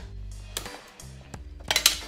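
Background music playing, with glossy wrapping paper crinkling as it is folded around a box; a brief, louder rustle of the paper near the end.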